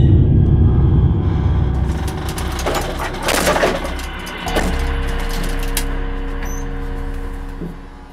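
Dark, sound-designed film score. A heavy low rumble gives way to a noisy swell about three seconds in, then a steady held drone of several low tones that fades near the end.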